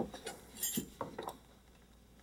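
A few faint, light taps and clinks, scattered over the first second and a half, then quiet room tone.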